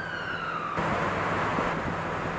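Ambulance siren in a slow wail. Its pitch falls until a cut about a second in; after the cut it is fainter and slowly rising again over road noise.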